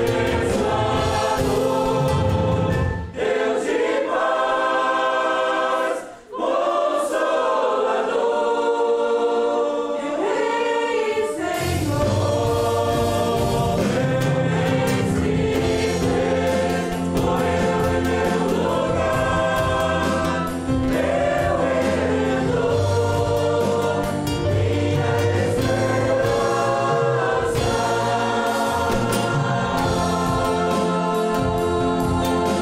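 Group of voices singing the chorus of a Portuguese hymn with keyboard and band accompaniment. The bass drops out for about eight seconds early on, then comes back in.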